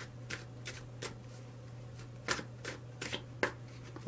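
A tarot deck being shuffled by hand, packets of cards lifted and dropped onto the rest of the deck, giving a string of soft, sharp card slaps at uneven spacing, about eight to ten over the few seconds.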